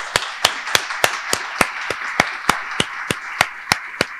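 Applause: one person's loud, evenly spaced hand claps right at the microphone, about three a second, over a steady wash of audience clapping.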